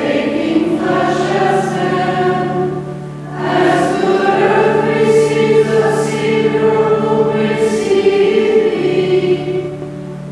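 A choir singing a liturgical hymn in long held phrases over steady low sustained notes, with a brief break between phrases about three seconds in.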